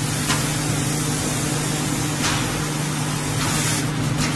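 Vertical form-fill-seal packaging machine running: a steady low hum under a loud hiss that swells in short bursts about a third of a second in, about two seconds in, and near the end, as the bag film is drawn down through the sealing jaws.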